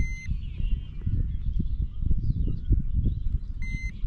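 Handheld digital fish scale beeping twice, two short high electronic beeps about three and a half seconds apart, over a low irregular rumble.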